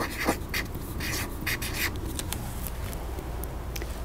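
Felt-tip marker writing on chart paper: a run of short strokes, about three a second, over the first two seconds, then fading to quiet rubbing and a couple of faint clicks near the end.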